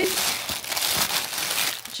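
Clear plastic bags wrapped around sourdough baguettes crinkling continuously as they are gripped and lifted out of the box, with a few sharp crackles.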